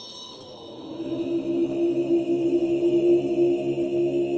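Tibetan Buddhist monks chanting, holding one low note steadily after swelling in about a second in.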